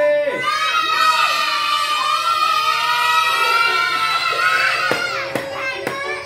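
A group of children shouting and cheering excitedly together, many high voices overlapping without a break.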